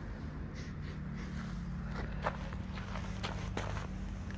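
WSK motorcycle's small two-stroke engine idling steadily, with scattered light clicks and footsteps over it.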